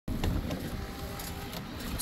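Steady low rumble and hiss of wind and rain around a work truck during a storm.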